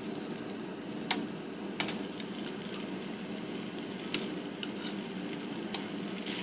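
Butter and olive oil sizzling steadily in a hot skillet as minced garlic is spooned in, with a few light clicks about one, two and four seconds in.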